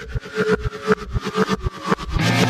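End-card lead-in audio: a steady low pulse of about four beats a second under held tones, just before loud rock music comes in.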